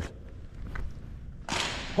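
Quiet gym room tone, then a single sudden swish of noise about one and a half seconds in, fading quickly, during a football throw at a target.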